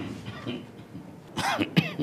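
A person's short non-speech vocal sounds: a brief one at the start, then two stronger ones close together in the second half, each dropping in pitch.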